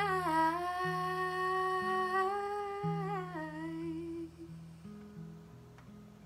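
A woman sings a long wordless note over strummed acoustic guitar chords; the note steps down in pitch about three seconds in and ends shortly after. The guitar chords ring on alone, fading out as the song closes.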